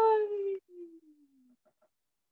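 A woman's drawn-out, sing-song goodbye call, high and slowly falling in pitch, that trails off quieter and lower and stops about a second and a half in.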